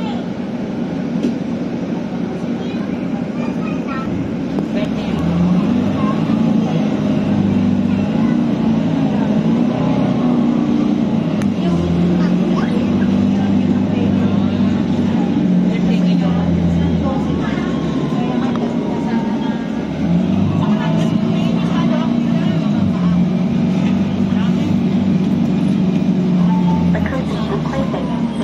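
City bus heard from inside the cabin: engine and road noise, with the engine drone getting louder about five seconds in as the bus gets moving, easing briefly near twenty seconds, then picking up again. Passengers' voices can be heard underneath.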